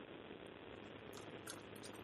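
Faint steady hiss of an internet voice call while the far end's voice has dropped out, with a few faint ticks about a second in and near the end.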